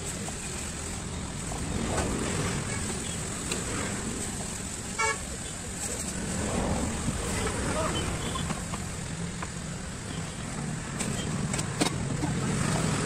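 Street traffic with a steady low rumble, and one short vehicle horn toot about five seconds in.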